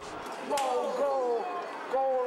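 Boys' voices calling out with excited, falling-pitched cries, twice, over the echoing background of a busy hall, with a sharp knock about half a second in.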